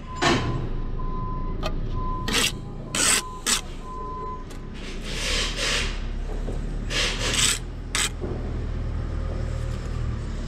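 Steel brick trowel scraping against bricks and mortar in a run of short strokes, with a longer scrape about five seconds in and a few more strokes near the eighth second.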